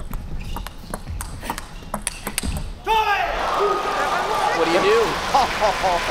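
Table tennis rally: the plastic ball clicks sharply off paddles and table in quick succession for nearly three seconds. The point ends, and the arena crowd breaks into loud cheering and shouting.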